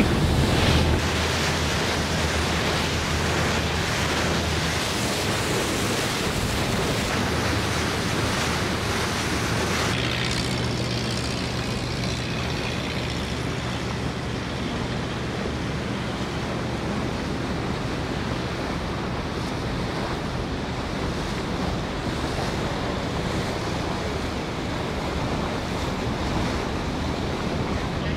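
Wind rushing over the microphone and water rushing past the hull on the open deck of a passenger ferry under way, with a steady low engine hum beneath.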